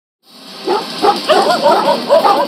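Angry dog barking in a rapid run of short barks, about four a second, starting about a quarter of a second in.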